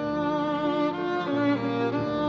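Violin and piano music: the violin plays a melody of held notes with vibrato over lower notes in the accompaniment.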